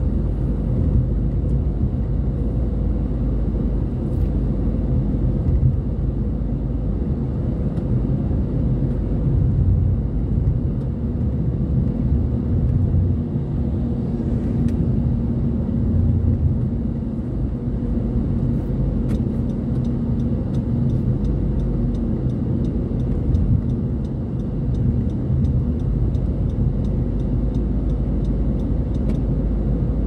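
A car travelling at highway speed: a steady low rumble of road, tyre and engine noise, with a faint steady hum running through it.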